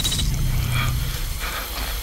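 Horror-trailer sound design: a low, steady rumble with short mechanical creaks, once a little under a second in and again past the middle.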